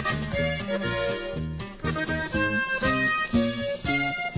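Instrumental break of a norteño corrido: accordion melody over guitar and a bass line that steps between notes in a steady beat.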